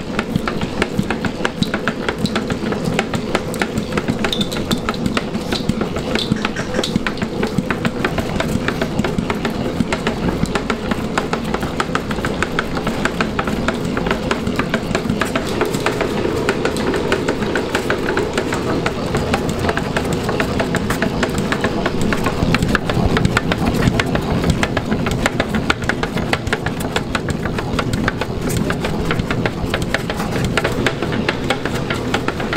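Electric stand mixer running steadily, its dough hook kneading stiff Belgian waffle dough in a stainless-steel bowl: a constant motor hum with a fast, continuous clatter.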